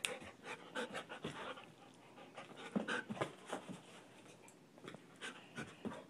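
A dog panting, with scattered short clicks and taps.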